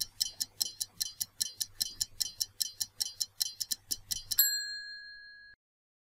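Stopwatch ticking sound effect, about five ticks a second, ending about four and a half seconds in with a single bell-like ding that rings and fades for about a second: the quiz countdown timer running out.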